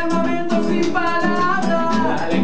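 Acoustic Latin rumba-style music: a nylon-string classical guitar strummed in a steady rhythm, with voices singing over it.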